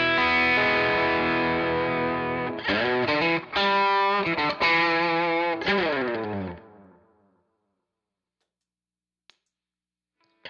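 Overdriven electric guitar played through the Menatone Fish Factory's Blue Collar Overdrive side. A held chord is followed by a run of notes that bend and slide down, ringing out and fading to silence about seven seconds in. A single faint click near the end, from the pedal's footswitch switching over to the Red Snapper side.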